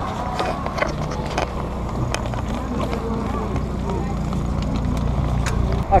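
Bicycle rolling over a cobblestone street: a steady low rumble with irregular rattling clicks as the wheels cross the stones.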